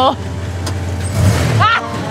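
A van's engine idling with a steady low hum. A short bit of voice comes in near the end.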